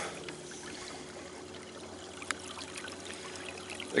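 A 34-pound-thrust electric trolling motor running on the canoe's transom, its propeller steadily churning and splashing the water behind the boat.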